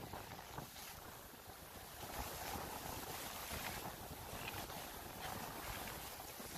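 Steady rushing, scraping noise of a felled tree being dragged over snow behind an SUV, with wind buffeting the microphone.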